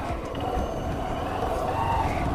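Honda CB Shine 125's single-cylinder four-stroke engine running at low revs, a steady low rumble.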